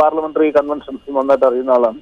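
A man speaking in Malayalam, his voice thin and narrow like speech over a telephone line.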